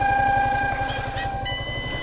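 A motorcycle engine idling with a fast, even pulse, overlaid by steady electronic tones from the handlebar-mounted phone. The tones change to a different, higher set about one and a half seconds in, with two short clicks just before.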